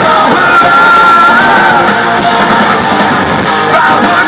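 Live hard rock band playing loud through the PA, with distorted guitars, bass and drums under the singer's vocals; a long note is held starting about half a second in.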